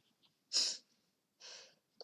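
A person's two short, sharp breaths close to the microphone, a louder one about half a second in and a fainter one about a second later.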